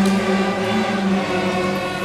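Student string orchestra playing slow, held notes, with the cellos bowing steadily.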